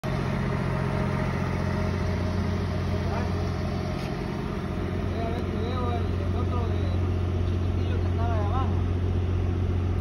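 A heavy engine running at a steady, unchanging drone, typical of the machinery standing by for a concrete pour. Distant voices can be heard over it between about five and nine seconds in.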